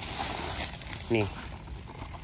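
A man's voice saying one short word about a second in, over faint, steady background noise.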